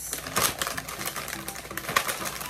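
Plastic Oreo cookie packet crinkling and crackling in the hands as it is handled and opened, a run of irregular sharp crackles with the loudest near the end.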